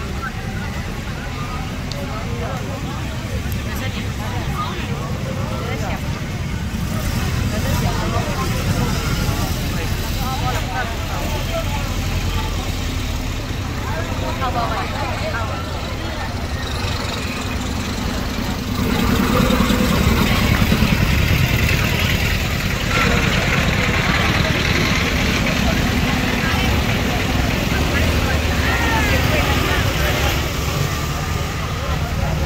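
Vehicle engines running as procession trucks move slowly past, under the chatter of a roadside crowd. The rumble gets louder about two-thirds of the way through as a truck comes close.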